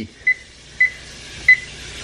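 Oven control panel keypad beeping three times, one short high beep per key press, about half a second apart, as the bake temperature of 350 °F is keyed in to preheat.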